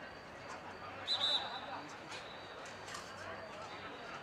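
A referee's whistle blown once, briefly, about a second in, over scattered shouts and talk from players.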